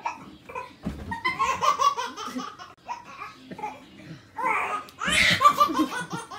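Several people laughing, a baby's laugh among them, in a series of broken bursts; the loudest burst comes near the end.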